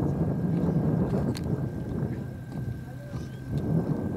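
Jet airliner engines on the runway: a dense low rumble with a thin steady whine above it, fading gradually.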